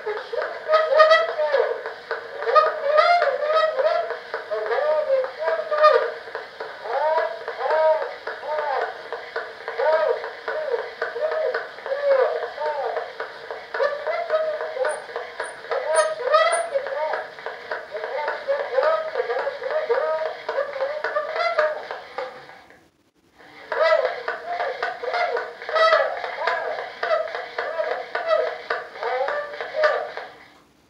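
A recorded voice played back from aluminium foil on a hand-cranked Gillette tinfoil phonograph, coming through the reproducer's horn thin and without bass. It breaks off for about a second roughly three quarters of the way through, then resumes.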